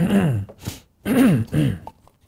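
A man clearing his throat twice, each a voiced, falling 'ahem' about half a second long, with a short breath between them. His throat is irritated, which he puts down to having breathed in a lot of dust that day.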